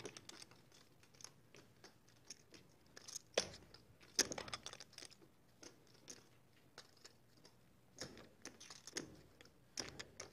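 Poker chips clicking against each other as players fiddle with their stacks at the table: faint, irregular clicks, with a few sharper clacks about three and four seconds in and a cluster near the end.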